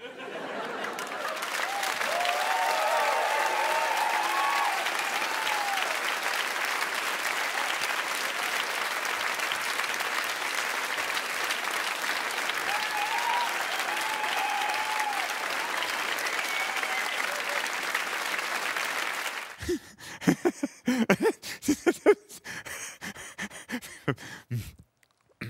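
Studio audience applauding, with cheers rising over the applause twice; the applause cuts off suddenly near the end.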